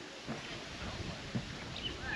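Quiet outdoor ambience: a steady soft hiss of breeze, with a couple of faint soft thumps.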